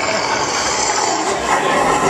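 Loud nightclub din: crowd noise and club music blurred together into one dense, steady wash of sound.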